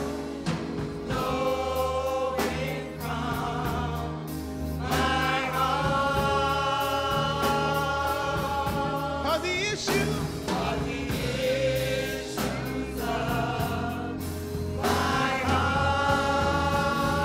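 Gospel praise team of several voices singing together at microphones, holding long notes in harmony over a music accompaniment with steady low notes.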